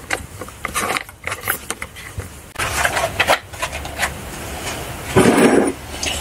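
Plastic screw cap being twisted off a plastic chemical bottle, with small clicks, scrapes and knocks of plastic handled on a wooden bench. A short rushing noise near the end.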